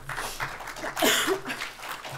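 Audience applauding at the end of a talk, with a short laugh and voices mixed in. The clapping is loudest about a second in.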